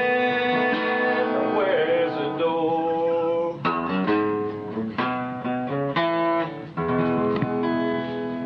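Acoustic guitar finishing a country song: a sung note held over the first two seconds or so, then single strummed chords about a second apart as the song winds down.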